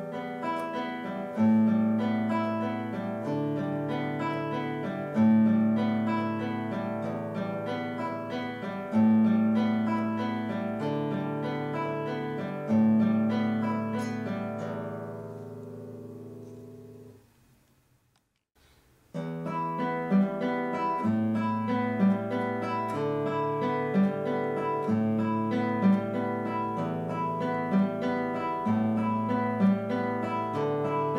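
Classical nylon-string guitar playing a repeating fingerpicked arpeggio over a bass note that changes about every four seconds, demonstrating right-hand planting: the fingers are set on the strings before they pluck. The first run lets the notes ring and fades out about seventeen seconds in. After a short silence, a second run starts with shorter, more clipped notes.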